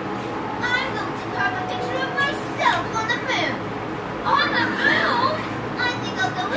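High-pitched children's or cartoon voices squealing and chattering without clear words, their pitch sliding up and down in short phrases, over a faint steady hum.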